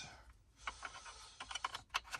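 Light plastic clicks and taps from a wiring-harness connector and its wires being handled, with a quick run of clicks near the end.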